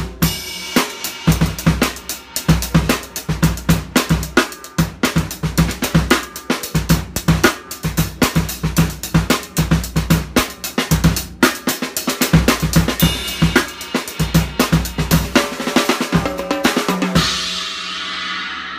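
Drum kit played in a fast, busy groove: triple strokes on the hi-hat over snare and bass drum hits. The playing stops about a second before the end, leaving the cymbals ringing out.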